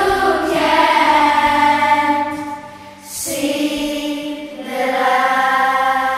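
Layered choir-like vocal harmonies holding long sustained chords. The sound dips briefly about three seconds in, as a new chord begins, and the chord shifts again near the end.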